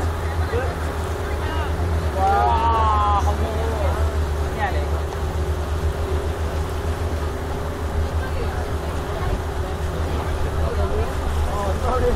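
Speedboat engine running with a steady low hum as the boat moves slowly through the water. Voices talk briefly about two to three seconds in.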